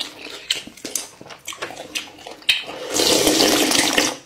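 Close-miked eating sounds of noodle soup: wet chewing and mouth smacks with small clicks, then about three seconds in a loud, long slurp of noodles and broth from the bowl.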